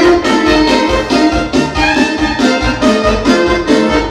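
Live band music with accordion and violin playing a lively dance tune over a steady beat.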